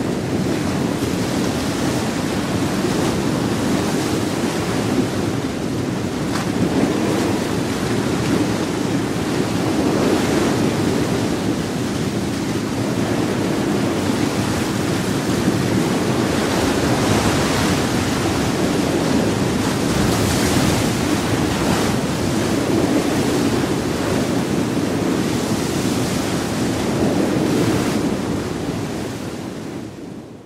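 Sea waves washing in a steady, rushing wash that swells and eases every few seconds, then fades out near the end.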